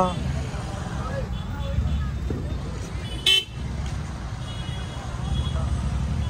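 Steady low rumble of slow street traffic with faint crowd voices. A single short car-horn beep sounds about three seconds in.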